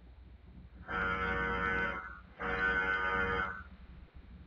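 A car horn sounds twice: two long, steady honks of about a second each, with a short gap between them.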